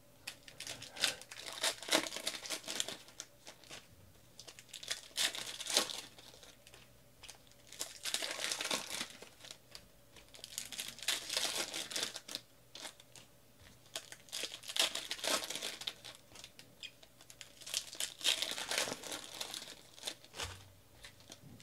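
Foil trading-card pack wrappers crinkling and being torn open by hand, in bursts of a second or two every few seconds.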